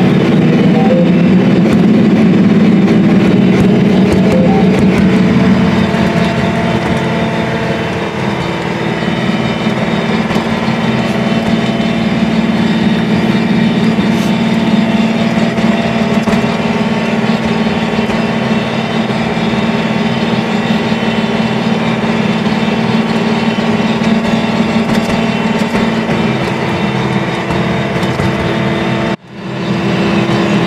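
John Deere R4045 self-propelled sprayer running steadily across a field, a constant droning engine hum. It gets somewhat quieter about eight seconds in and drops out briefly just before the end.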